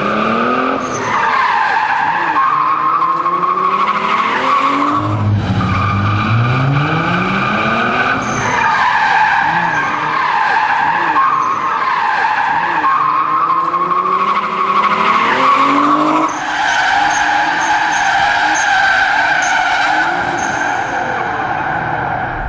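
A rear-wheel-drive sports car doing J-turns: the engine revs hard, rising through the gears, over long tyre squeals as the car is flung round and driven away. The squealing breaks off and starts again a few times across back-to-back runs.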